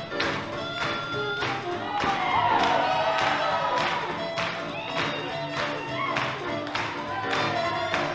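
A live swing big band with horns, saxophones, drums and upright bass plays up-tempo music for Lindy Hop dancing. The drums keep a steady beat of about two strokes a second, and sliding horn notes are the loudest part, about two to three seconds in.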